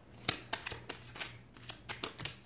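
A deck of tarot cards being shuffled by hand: a run of light, irregular card snaps and taps, with the sharpest snaps about a third of a second in and at the end.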